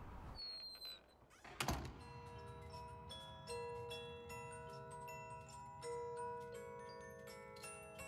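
A door shuts with a single loud thud about a second and a half in. A slow film-score melody of ringing, bell-like struck notes, like a glockenspiel or music box, then begins and carries on.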